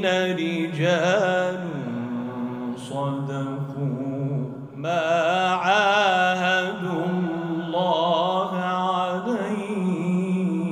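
A man reciting the Quran into a handheld microphone, sung in long, melodic phrases that hold and ornament their notes with a wavering pitch. There is a short break in the voice just before the midpoint.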